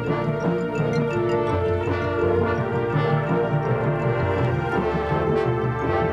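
High school marching band playing, the brass holding sustained chords over percussion.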